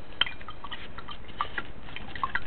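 Green AP solution draining through a paper coffee filter in a percolator basket: scattered small drips and ticks over a steady low background.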